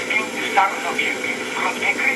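Unitra ZRK AT9115 FM receiver tuned to a weak station: broadcast speech coming through faint and broken under steady hiss, as the FM section is being realigned.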